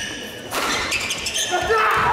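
Court shoes squeaking sharply on a wooden gym floor in a fast badminton doubles rally, with racket strikes on the shuttle. Voices rise over it in the last half second.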